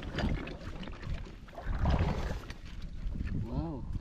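Wind rumbling on the microphone with handling knocks and rustles as shells are dropped into a woven sack, and a short voice near the end.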